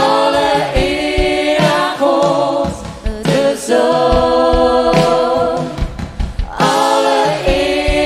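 Live worship song sung in Dutch: a woman singing the lead over electric guitar and drums, with more voices singing along.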